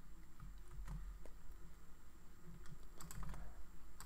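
Faint typing on a computer keyboard as a password is entered: a run of irregular key taps, coming closer together near the end.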